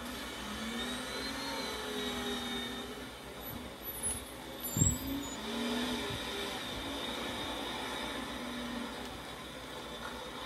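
A loaded log truck's engine running as it moves, with one loud thump about halfway through.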